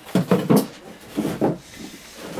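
Fiberglass armour shells being slid and set down on wooden floorboards, making a few short scraping and knocking sounds.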